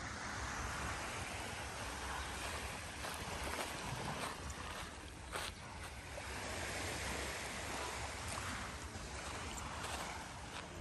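Small Black Sea waves washing onto a sandy shore, the wash swelling and fading twice, with low wind rumble on the microphone and a brief click about halfway through.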